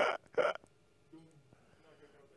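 Laughter: two short, breathy bursts in the first half-second.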